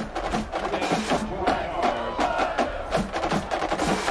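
Percussion music: a drum cadence with many sharp, rapid clicking strokes.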